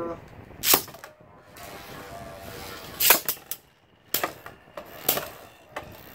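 Two Beyblade spinning tops launched into a plastic stadium: a sharp crack as they go in about a second in, then a faint steady whir of the tops spinning, broken by sharp clacks as they strike each other or the stadium wall, three times in the second half.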